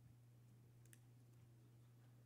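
Near silence: room tone with a steady low hum and a faint click about a second in.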